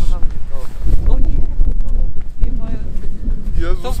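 Wind buffeting the camera microphone: a loud, constant low rumble, with faint voices under it.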